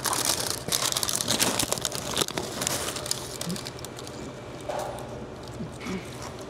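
Paper sandwich wrapper crinkling and rustling as it is handled around a pickle sandwich, busiest in the first two seconds or so and then quieter.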